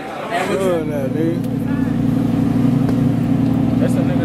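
Lamborghini Huracán's V10 engine idling, a steady low drone that comes in about half a second in.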